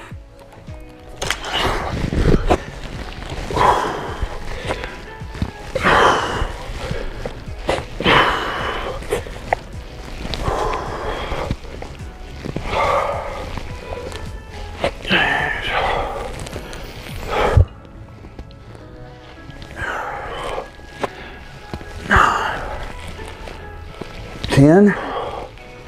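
A man breathing out hard about once every two seconds, in time with the reps of a set of chest-supported dumbbell rows, over background music. There is one sharp knock about three-quarters of the way through.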